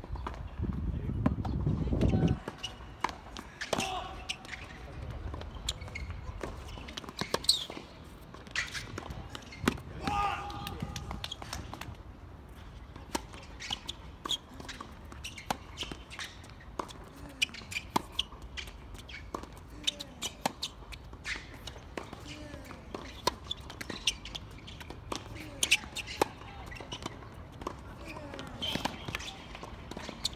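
Tennis ball struck by rackets and bouncing on the court during play, a series of sharp pops scattered throughout, with a low rumble for the first two seconds.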